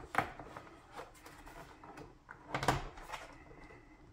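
Plastic handling noise as a credit card is worked along the edge of an all-in-one PC's display panel to unclip it: faint scrapes and light clicks, with a short run of sharper clicks a little past halfway.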